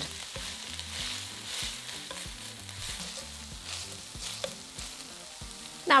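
Diced onion, garlic and ginger frying in ghee with whole spices in an enamelled pan, sizzling steadily, with a few light clicks of a slotted spatula as it is stirred.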